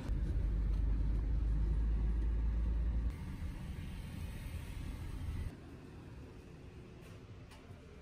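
Low, steady rumble of road traffic, with a heavy truck passing. It drops abruptly about three seconds in, and again about five and a half seconds in, to a quieter outdoor hush.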